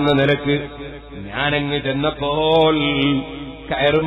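A man chanting a short devotional refrain over and over, in long, drawn-out melodic phrases.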